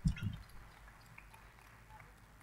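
A brief low thump or muffled low sound at the very start, then quiet room tone.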